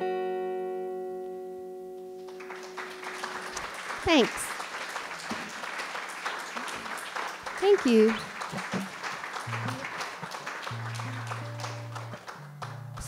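The last chord of an electric guitar rings out and fades. About two seconds in, an audience breaks into applause that lasts almost to the end, with two loud whoops from the crowd. A couple of low guitar notes sound under the clapping near the end.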